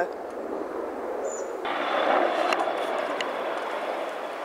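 Helicopter flying overhead: a steady engine and rotor noise that grows fuller and a little louder about halfway through.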